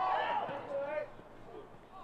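Distant voices shouting across a football pitch for about a second, then fading to faint open-air background.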